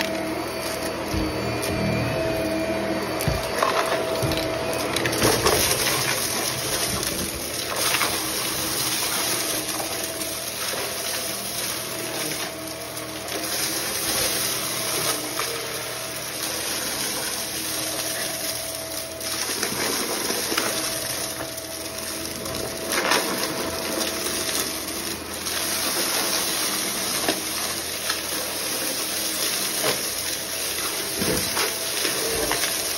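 Stick vacuum cleaner running steadily while vacuuming a carpet strewn with small debris, with frequent irregular clicks and rattles as hard bits are sucked up.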